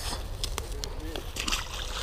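A released fish dropping back into the creek with a splash and water sloshing, among a few short knocks.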